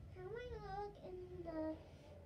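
A young girl singing softly to herself without words, in two short phrases of held notes that bend up and down.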